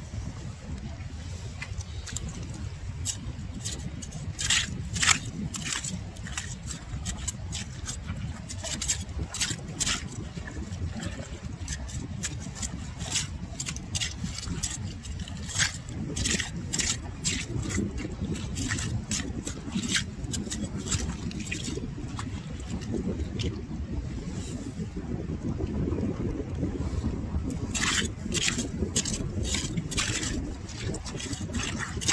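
Short-handled clam rake scraping and clicking through shelly mud as manila clams are dug out of a tidal mudflat, with many irregular sharp scrapes and shell clicks. A steady low rumble runs underneath.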